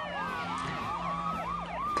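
A cartoon siren sound effect warbling rapidly up and down, about four times a second, over a long falling whistle.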